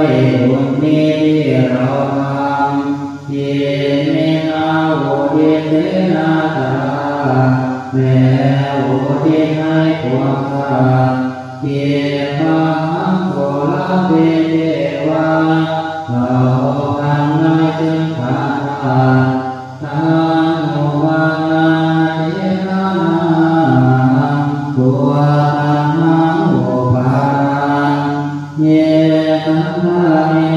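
A group of Thai Buddhist monks chanting Pali verses in unison on a low, near-level pitch, as in the evening chanting service (tham wat yen). The chant breaks for a breath about every four seconds.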